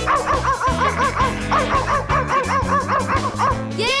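A cartoon puppy yipping in quick, high, repeated barks, about four a second, over bouncy children's-song backing music.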